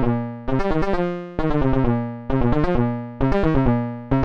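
Analog synthesizer voice shaped by the BMC114 Diode Break waveshaper, playing a repeating sequenced pattern. A new phrase starts about once a second, each opening with a quick run of short pitched notes and then fading away.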